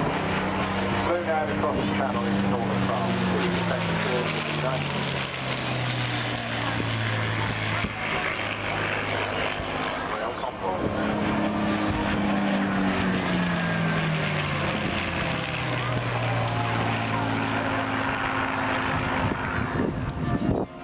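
Display aircraft passing overhead, their engine drone falling in pitch as each goes by, twice, about ten seconds apart.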